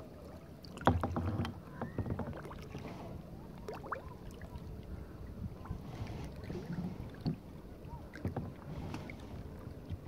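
Water lapping and gurgling around a kayak close to the microphone, with irregular small splashes and clicks; the loudest splash comes about a second in.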